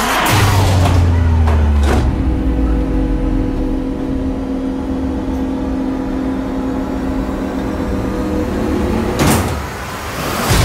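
Trailer sound design: a hit at the start with a low tone falling over about two seconds, then a steady droning hum of several held tones, and a short whoosh near the end.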